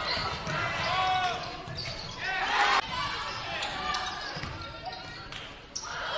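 Live basketball game sound in a gym: a basketball bouncing on the hardwood court amid shouts and voices from players and spectators. The sound breaks off suddenly a little under three seconds in and resumes.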